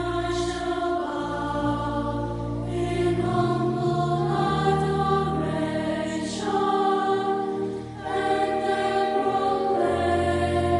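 Background music: a choir singing slow, held chords that change every second or two over low bass notes.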